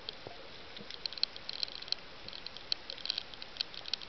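Underwater reef crackle: many short, sharp, irregular clicks over a steady hiss, growing busier from about a second in, typical of snapping shrimp on a coral reef.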